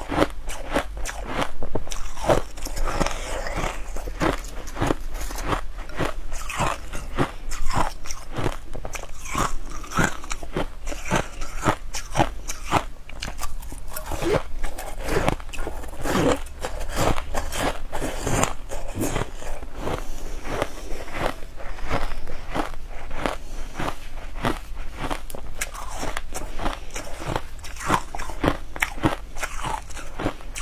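Close-up mouth sounds of a person biting and chewing frozen berries: dense, irregular crisp crunches that keep on without a break.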